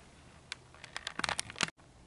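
Several faint, irregular clicks and light taps, then the sound cuts out completely for a moment near the end.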